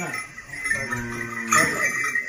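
Small brass bells on a bull's decorated harness jingling as it is handled and fitted. Near the middle, a single pitched call is held on one note for about a second.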